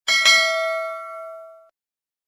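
Bell-ding sound effect for a notification bell icon: struck twice in quick succession, then ringing and fading away over about a second and a half.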